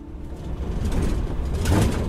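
A car driving, with a steady engine and road rumble that fades in over about the first second.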